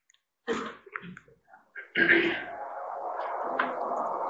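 A person coughing and clearing their throat in short bursts, the loudest about halfway through. After that comes a steady background hiss of room noise.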